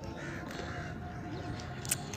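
A crow cawing over a steady outdoor background, with one sharp click just before the end.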